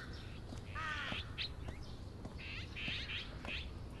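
A crow caws once, about a second in, over faint outdoor background sound.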